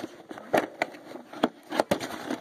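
A handful of sharp clicks and light knocks, about five spread over two seconds, from hard plastic toys and their box being handled.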